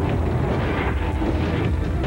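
Big-truck engine noise, loud and steady and heavy in the lows, mixed with theme music.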